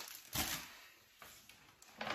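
A short rustle and knock of boxed packages being handled in a brown paper shopping bag, followed by a faint click about a second later; otherwise quiet.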